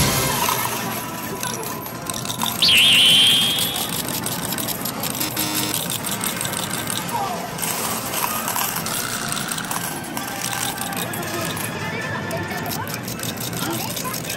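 Busy medal-game arcade din: coin-pusher machines playing electronic music, with voices in the background. About three seconds in, a short, loud, high-pitched sound cuts in.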